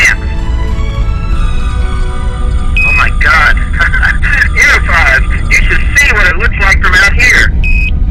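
Sci-fi computer scanning effects: a run of rapid warbling electronic chirps from about three seconds in, framed by two short steady beeps, over a low rumble and music.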